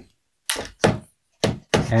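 Carbon fiber tripod center column being pushed back into its collar with the release button held, giving three short knocks and clunks as it seats and locks into place.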